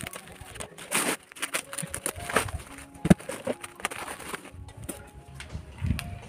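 Scissors cutting open a plastic-wrapped, taped bale of coco peat: crinkling and rustling of the plastic sack and tape, with a sharp click about three seconds in.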